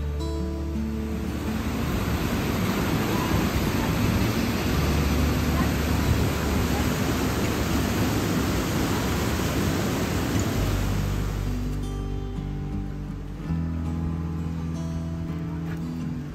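Mountain stream rushing through a narrow rock gorge, a steady hiss of white water, heard under background music with long held notes. The water fades out about three quarters of the way through, leaving the music alone.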